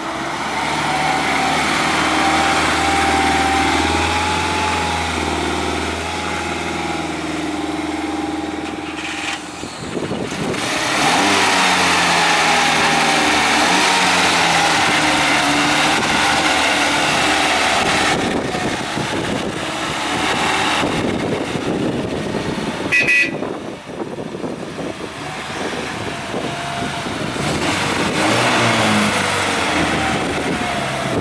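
1956 Mercedes-Benz 190SL's four-cylinder engine running as the roadster drives past and moves off at low speed, in several takes joined by abrupt cuts. A brief high beep comes about two-thirds of the way through.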